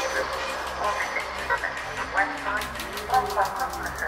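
Downtempo psychedelic ambient (psybient) electronic music, with chirping blips and curving, sliding pitch glides in the middle. A fast, faint ticking in the high end grows stronger about two and a half seconds in.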